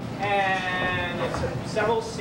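A person's high, wordless voice held on one pitch for about a second, followed by shorter voice sounds near the end.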